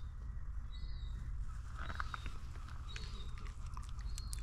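Outdoor ambience: a steady low rumble, with short high chirps about once a second and a few light clicks near the middle and the end.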